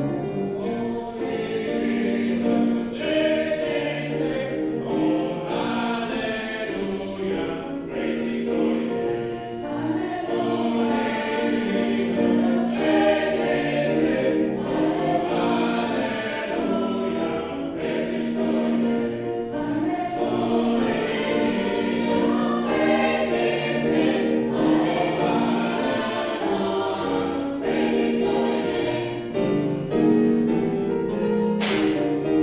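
A mixed choir of men and women singing a gospel song in harmony, with piano accompaniment.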